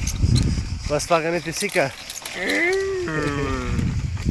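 A low rumble at the start, a short spoken word, then a person's voice holding one long drawn-out vowel that rises and then falls in pitch for about a second and a half.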